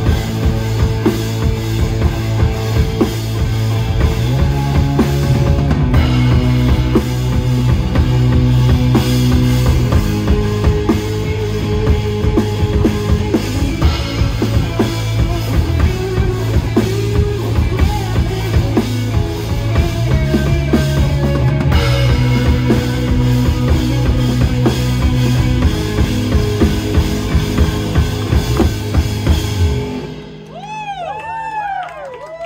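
Live rock band playing: two electric guitars, one a Telecaster, with bass guitar and a drum kit keeping a steady beat.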